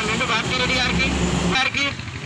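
A man making a speech in Telugu into a handheld microphone, over a steady low rumble that cuts off suddenly about one and a half seconds in.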